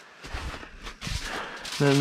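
Aluminium foil being pulled off the roll and torn into a sheet: a crinkling rustle. Two dull knocks come about a third of a second and a second in.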